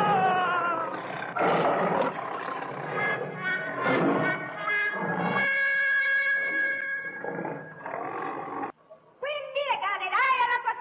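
A lion growling and roaring in several rough bursts over the first half. After that come steady held musical tones, and then a voice near the end.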